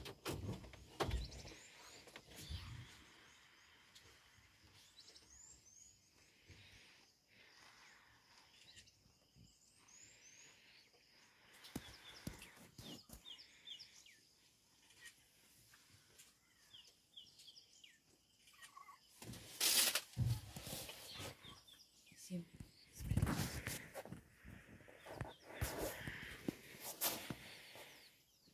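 Quiet open-air bush ambience with faint bird chirps now and then. A few loud noisy bursts come about two-thirds of the way in and again near the end.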